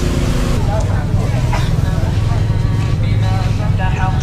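A steady low engine hum runs throughout, under faint, scattered chatter of people nearby.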